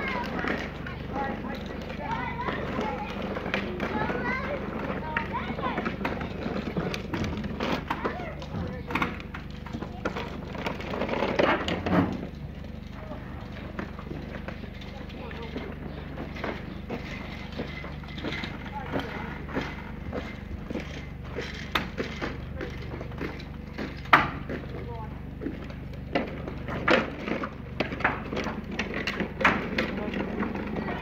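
Large sheet-metal sliding barn door being pushed and bent back by hand: scattered knocks and clanks of the metal, with louder bangs about twelve seconds in and again about twenty-four seconds in. People talk in the background, mostly in the first few seconds.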